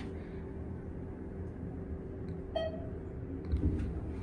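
A steady low hum inside a descending ThyssenKrupp-modernized hydraulic elevator cab. About two and a half seconds in, a single short electronic beep sounds from the car's fixtures.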